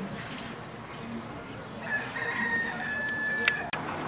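A single long held call, most like a bird's, from about two seconds in for about a second and a half, followed by two sharp clicks.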